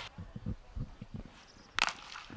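Cricket bat striking the ball: one sharp crack near the end, over faint ground noise.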